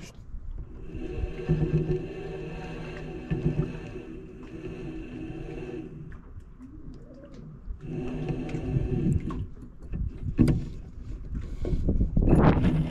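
Fishing reel being cranked to retrieve the line, right beside the microphone: a steady gear whir in two stretches with a short pause between. A sharp knock and rod-handling noise come near the end.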